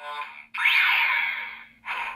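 Kamen Rider Fourze Driver toy belt playing its Scoop Switch 'on' sound effect through its small speaker: a short electronic call, then a loud sweeping whoosh with a rising tone, then quick pulses near the end, like a scoop swung around while digging. A steady low electronic hum runs beneath it.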